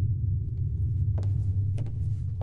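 A steady low rumble, joined from about a second in by sharp footsteps on a wooden floor, about one every 0.6 s.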